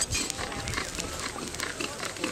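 Dry moss tinder bundle rustling and crackling irregularly as it is turned and handled in the hands, with an ember smouldering inside it.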